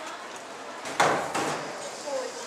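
A metal canister knocked once by handling, about a second in: a sharp hit with a short tail.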